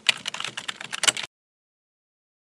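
Computer keyboard typing sound effect: a quick run of key clicks that stops abruptly about a second and a quarter in.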